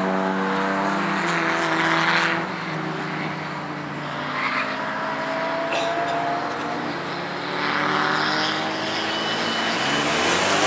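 Several race cars' engines heard at once from the track, their pitch rising under acceleration and dropping as they lift off, with a louder rush of noise as a car passes about two seconds in and again near eight seconds.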